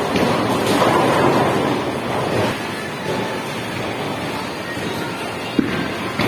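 Bowling alley noise: a bowling ball rolling down the lane, the sound swelling around a second in as it reaches the pins, over the steady rumble of the alley. A sharp knock near the end as a ball is set down on the lane.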